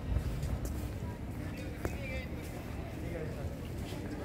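Faint, indistinct voices of people some way off, over a steady low rumble of wind and handling on a phone microphone carried while walking, with a few light clicks.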